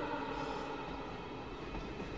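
Steady low rumble of city traffic passing over a bridge, heard from underneath. A held musical note fades out in the first half second.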